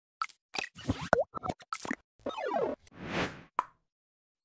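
Animated logo intro made of synthetic sound effects. It opens with a quick run of pops and plops, moves to a cluster of falling pitch glides, then a whoosh that swells and fades, and ends on a single click just before the logo settles.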